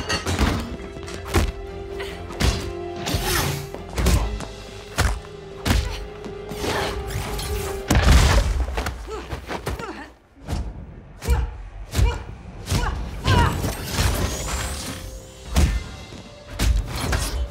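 Action-film fight sound mix: a rapid run of punches, thuds and crashing furniture over tense score music, with a heavy crash about eight seconds in.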